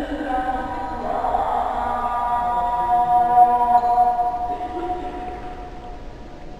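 A muezzin's solo voice chanting the Turkish ezan, the Islamic call to prayer, in long melismatic lines. It rises to one long held note that fades away near the end.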